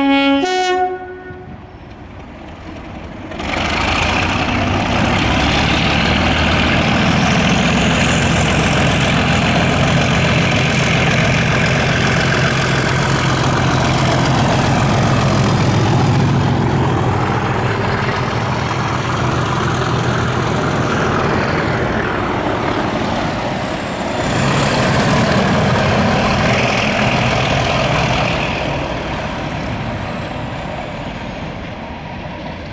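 A BR Class 37 diesel locomotive sounds its two-tone horn for about a second at the start. From a few seconds in, its English Electric V12 engine is heard working hard under power ("thrash") as it passes, with a high whistle over the engine note. The engine sound dips and then swells again for a few seconds near the end.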